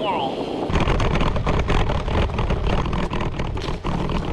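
Wind buffeting an action camera's microphone on a moving road bike, together with the rattle of the bike rolling over bumpy ground; the low rumble and clatter grow much louder about a second in.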